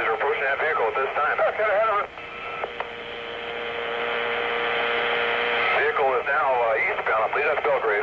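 Recorded police two-way radio traffic: a thin, narrow-sounding voice breaks off about two seconds in. The open channel then gives a steady hiss with a low hum that slowly grows louder, and another radio voice comes back in for the last couple of seconds.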